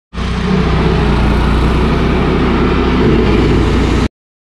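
Stump grinder's engine running loudly and steadily at speed; the sound starts suddenly just after the beginning and cuts off abruptly at the end.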